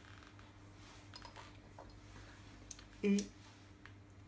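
Quiet room with a steady low hum and a few faint light ticks of whole pistachios being set by hand on a plate of sliced duck breast. A woman's voice says a single word near the end.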